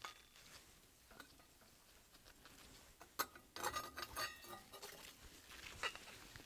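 Faint metallic clicks and clinks from the rear coupling guard of a Goulds e-SVI pump and its screws being removed and handled, with a cluster of small ringing clinks about three and a half to five seconds in.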